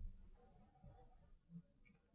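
Marker tip squeaking on a glass lightboard as words are written: a few short, high squeaks in the first second or so, the last one more than a second in.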